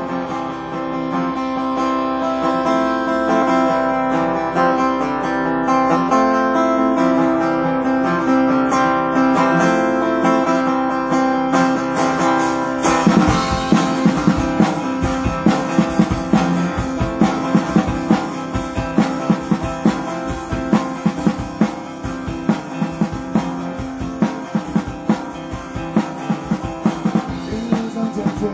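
Live band's instrumental intro: acoustic guitar chords ring out over a sustained backing, and about thirteen seconds in the drum kit comes in with a steady rock beat under the strummed guitars.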